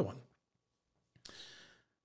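A man's short, airy breath about a second into a pause in his speech, lasting about half a second.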